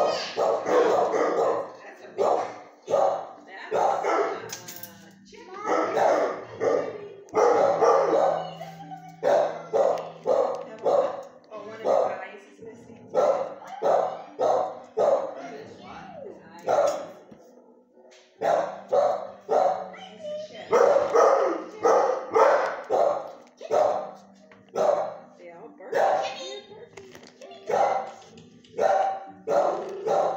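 Shelter kennel dogs barking repeatedly, one bark after another with only short pauses, and a brief lull about two-thirds of the way through.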